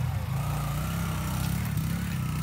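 Small motorcycle's engine running steadily at the foot of a steep dirt hill, ready to ride up.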